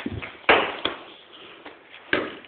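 A single sharp knock about half a second in, followed by a smaller click: a small metal toy truck being struck and smashed.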